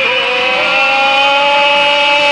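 A man belting one long held note of a gospel song, singing along with a recording of the song as it plays.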